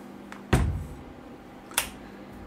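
A home-built slow-speed carbide grinder, a gear motor on a boxy base, is set down on the workbench with a single thump about half a second in. A short sharp click comes near the end as its toggle switch is flipped.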